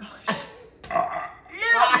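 A person burping after taking a drink, with a few spoken words over it.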